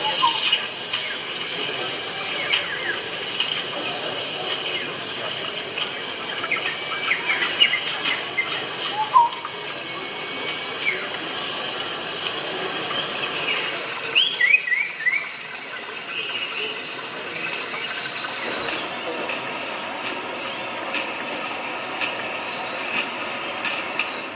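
Short bird-like chirps, some in quick clusters of two or three, over a steady background of hall murmur and hum.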